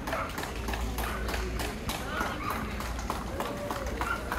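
Quick footsteps tapping on a hard concrete floor, about four to five a second, as a handler trots a small dog around the ring, with voices talking in the background.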